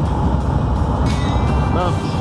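Steady road and engine rumble inside a moving vehicle's cab at highway speed.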